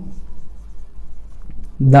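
Marker pen writing on a whiteboard: faint rubbing strokes and small ticks as words are written out. A man's voice comes in near the end.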